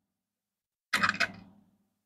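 A brief cluster of sharp clicks about a second in, from copper pennies clinking against one another on a wooden tabletop as one is picked up.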